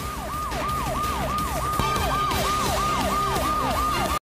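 Siren sound effect in a TV news break bumper: a rapidly repeating falling wail, about three sweeps a second, over a low steady rumble.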